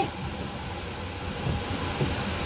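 Steady mechanical hum and hiss of background machinery, with a faint low knock about one and a half seconds in.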